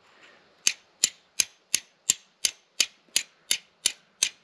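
A steel fire striker hit repeatedly against a piece of flint, about ten sharp, evenly spaced clicks at roughly three a second, starting just under a second in. Each strike throws sparks onto char cloth held on the flint.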